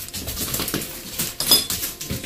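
Clattering and scraping of an old metal floor safe being handled as its door is pulled further open, with a sharp metallic clink and brief ring about one and a half seconds in.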